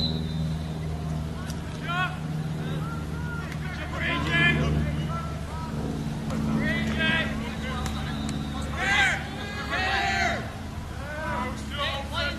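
Scattered shouts and calls from players and spectators at an outdoor lacrosse game, the loudest about nine and ten seconds in, over a steady low hum.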